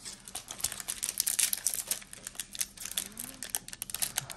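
Foil wrapper of a Panini Illusions trading-card pack crinkling in quick, irregular crackles as it is handled and torn open by hand.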